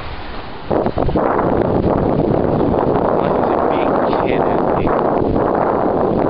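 Wind blowing across the microphone: loud, steady noise that dips for a moment right at the start.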